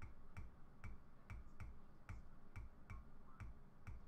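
A run of faint clicks, about two a second and unevenly spaced, each with a dull knock beneath it.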